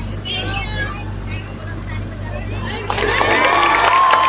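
A crowd of schoolchildren calling out and cheering: faint scattered voices at first, then a louder burst of shouting about three seconds in, with one long drawn-out call held above it.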